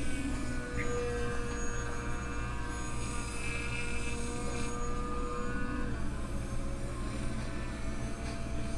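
Small RC seaplane's brushless electric motor and propeller whining steadily, heard played back through computer speakers over a low hum. The whine fades out about six seconds in.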